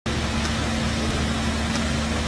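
Steady hum with a constant low tone under an even hiss, unchanging throughout: machine or electrical background noise.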